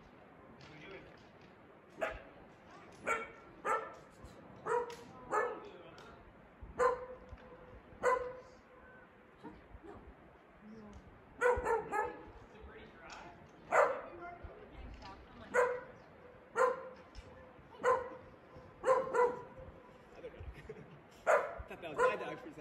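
A dog barking over and over, about sixteen short, sharp barks, most of them a second or so apart, with a pause of a couple of seconds about halfway through.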